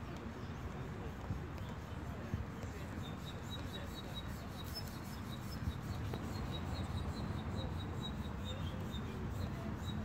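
Steady outdoor background rumble. From about three seconds in, a run of faint, short, high-pitched peeps comes several times a second from a small animal.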